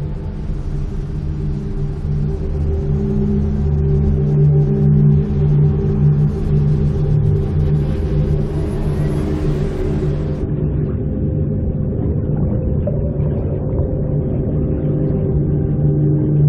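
A low, sustained drone of film score, layered with the noise of a bus ride in the rain that stops abruptly about ten seconds in, leaving the held drone alone.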